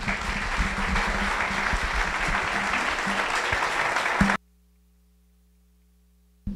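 Audience applauding, a dense, even clapping that cuts off abruptly about four seconds in.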